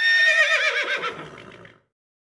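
A short sound effect on a closing logo: one quavering, animal-like call, high and wavering at first, then dropping lower and fading out after under two seconds.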